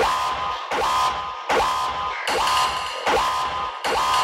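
Hard techno track at 153 BPM. Low bass hits and a higher synth line fall in a pattern that repeats about every three-quarters of a second.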